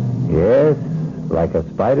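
A man's narrating voice speaking over a low, sustained music underscore.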